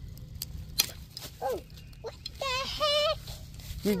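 A young girl's high-pitched vocal effort noises as she tugs a maple sap spile out of a tree: a few light clicks, then a short falling sound, then a longer sound with a wavering pitch about two and a half seconds in.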